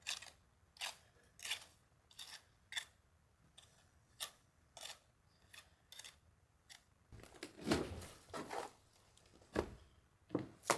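A steel trowel scraping lime mortar off a hand board and pressing it into the joints of a stone wall. Short, sharp scrapes come about once or twice a second, and near the end there are a couple of seconds of louder, deeper scraping.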